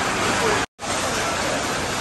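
Steady, even hiss of workshop background noise, broken by a short dropout at an edit just under a second in.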